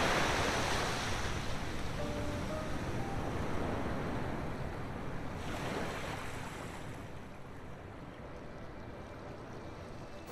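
Waves washing onto a beach: a steady rush of surf that swells again about five and a half seconds in, then slowly fades lower.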